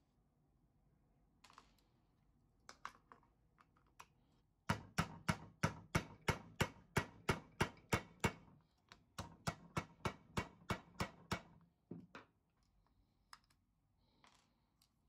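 A mallet tapping a nail held as a punch against a circuit breaker's rivet to drive it out: a fast, even run of sharp taps, about three or four a second, then a short pause and a second run. Lighter handling clicks come before the taps.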